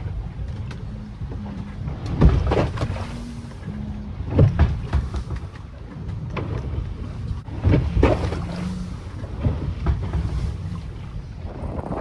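Wind and water rush aboard a sailing yacht under way, with loud gusts on the microphone every couple of seconds, under background music.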